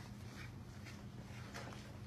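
Quiet room tone: a low steady hum, with a few faint soft rustles.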